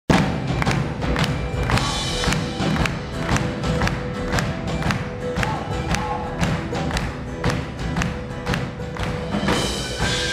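Live Irish folk band playing an upbeat tune, with a drum kit keeping a steady, quick beat under banjo, guitars, upright bass and keyboards.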